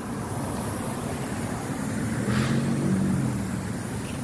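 A road vehicle passing on the street: a low engine hum that swells toward the middle and eases off near the end.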